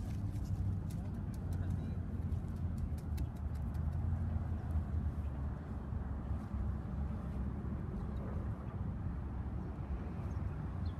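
A hand trowel digging into garden soil, with a cluster of short scrapes and clicks in the first three seconds and a few fainter ones later, over a steady low rumble.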